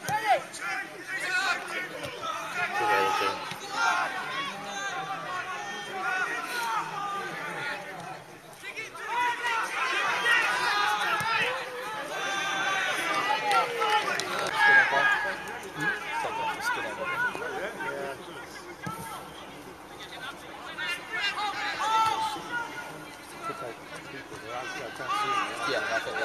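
Small football crowd along the touchline chattering, many overlapping voices, louder around the middle.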